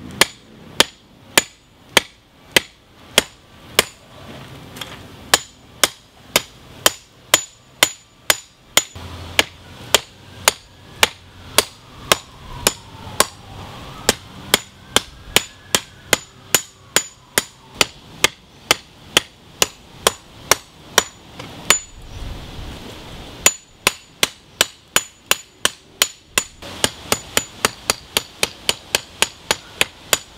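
Light hand hammer striking red-hot leaf-spring steel on an anvil while drawing out a knife tang: a steady beat of about two blows a second, each with a bright metallic ring. The blows stop briefly about three-quarters of the way through, then come quicker, about four a second, near the end.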